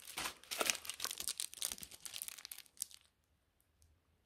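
Small clear plastic bags of square resin diamond-painting drills crinkling as they are picked from a pile and handled: rapid, irregular crackling for about three seconds that then stops.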